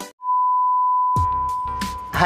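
One steady electronic beep, a single pure tone held for about two seconds, starting just after the music cuts off. Low background room noise comes in under it about halfway through.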